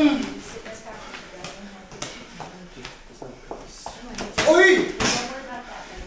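Muay Thai sparring: scattered sharp slaps and knocks of kicks and punches landing and feet on the ring floor, with a loud shouted call at the start and another about four and a half seconds in.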